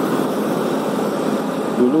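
Steady riding noise from a motorcycle moving in city traffic: wind and road rush with the engine running underneath. A man's voice comes in near the end.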